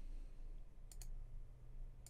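Two quick computer mouse clicks close together, about a second in, over a faint steady low hum.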